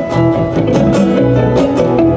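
Live acoustic rock band playing a short instrumental passage between sung lines: strummed acoustic guitars over bass, with no drums.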